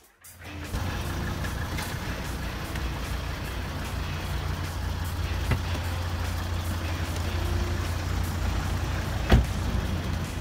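Volvo XC90 engine idling with a low, steady rumble, heard close to the car. A car door shuts with a thump near the end.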